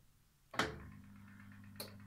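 Bosch Classixx 5 washing machine starting up: a click about half a second in, then a faint, steady low hum, with another short click near the end.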